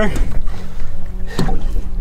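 Steady low rumble on a small boat, with a single knock about one and a half seconds in as a pike is laid on the deck measuring board.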